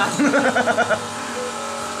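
A man laughing in short repeated bursts for about the first second, then a steady mechanical hum with several fixed tones.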